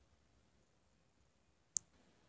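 Near silence broken by one short, sharp click near the end.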